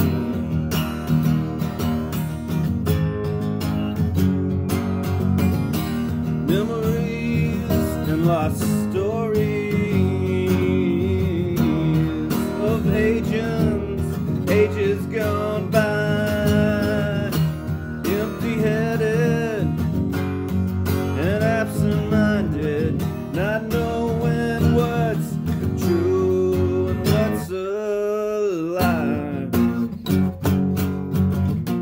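Acoustic guitar strummed in steady chords, with a man's voice singing a melody over it through most of the passage. The strumming breaks off briefly about two seconds before the end, then picks up again.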